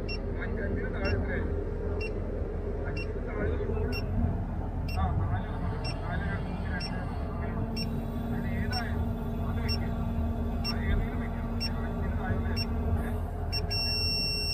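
Crane cab warning beeper giving short, evenly spaced beeps, about two a second, with one longer held beep near the end. It sounds during the automatic ballasting cycle, and when it stops an error code has come up. The crane's engine runs steadily and low underneath.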